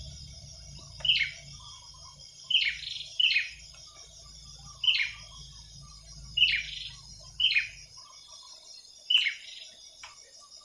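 Bird calling with short, sharp chirps, each dropping in pitch, repeated about seven times at uneven intervals of roughly one to one and a half seconds.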